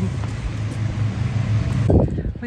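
Street traffic: a motor vehicle's engine running close by, a steady low hum over road noise. It stops abruptly near the end.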